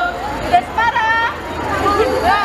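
Women's voices chanting a short group cheer phrase through microphones, about a second in, over the murmur of a crowd.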